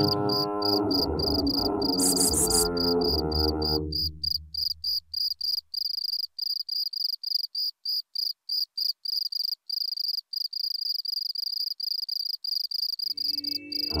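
Electroacoustic music: a high, cricket-like chirping pulse repeats about four times a second throughout. Layered, electronically processed voice tones fade out over the first few seconds, and a low layered drone with rising glides comes back in near the end.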